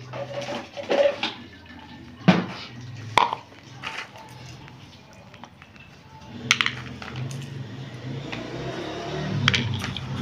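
Freshly roasted, still-warm peanuts being skinned by hand: the kernels click and rattle against a plastic bowl in a string of sharp knocks, then hands rub the dry papery skins off with a rustling sound, and a few skinned kernels click into an empty ceramic bowl.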